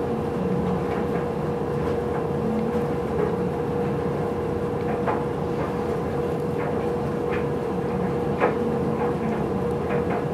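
A steady mechanical hum with one constant mid-pitched tone running through it, and a few faint clicks.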